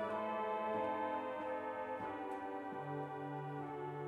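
Zeni organ playing a slow, soft piece: held chords that shift every second or so, with light clicks as the notes change. A low sustained bass note comes in about three quarters of the way through.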